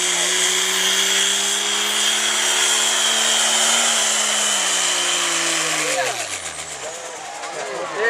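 Turbo-diesel engine of a Dodge Ram pickup under full throttle pulling a sled, with a high turbo whistle over the engine note. Its pitch climbs slightly, then falls away over about two seconds and fades as the truck bogs to a stop at the end of its pull.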